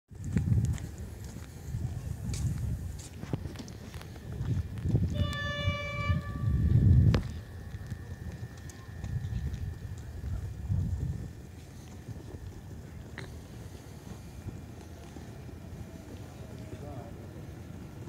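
Electric passenger train running past the platform, with loud gusts of wind buffeting the microphone. About five seconds in, a train horn sounds one steady note for just over a second. The noise dies down to a quieter background in the second half.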